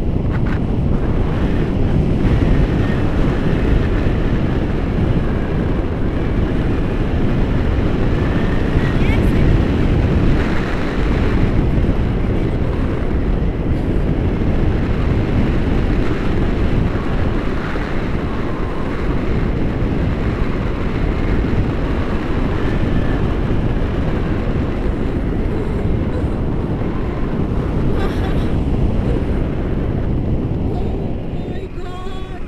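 Wind buffeting the camera microphone in flight under a tandem paraglider, a steady loud rumble from the airflow.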